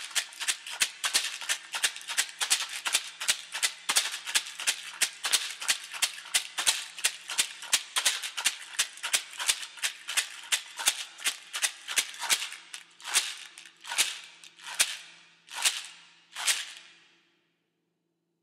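Large round rawhide shaman rattle shaken in a steady, even rhythm of about three to four strokes a second. Near the end the strokes slow to about one a second, then stop.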